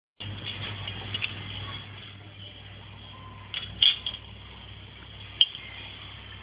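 A steady low hum with a few sharp clicks and clinks, the loudest a cluster a little past the middle and one more near the end.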